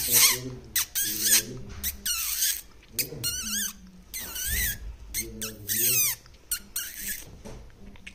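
Rose-ringed parakeet chattering at its mirror reflection: a string of short, sharp high squeaks and several warbling, wavering high calls, with lower voice-like mumbling in between.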